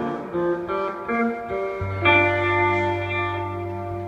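Electric guitar played alone: a few picked notes, then a closing chord about two seconds in that rings out, sustained, as the song ends.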